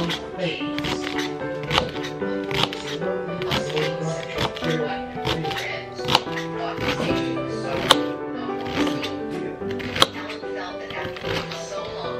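Background music, with a knife chopping celery and onion on a plastic cutting board in quick, sharp strikes. The two loudest strikes come about eight and ten seconds in.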